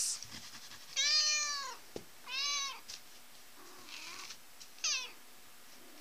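Domestic cat meowing four times: two clear, rising-then-falling meows about a second and two seconds in, then two shorter, fainter ones near the end.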